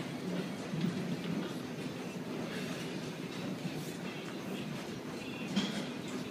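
Steady rumbling background noise of a large gym room, with a few faint knocks.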